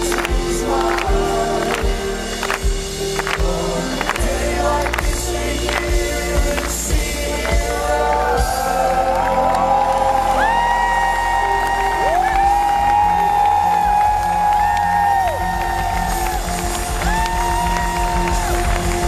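Live rock band playing with a male lead vocal sung into a handheld mic: a steady beat about twice a second for the first half, then long held, gliding sung notes over the band.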